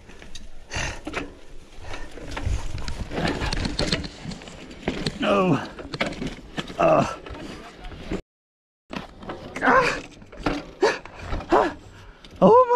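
A winded mountain-bike rider's voiced breaths and groans, several short sounds falling in pitch, over the rattle of the bike on a rough dirt trail and wind on the microphone. The rider is near exhaustion on the climb.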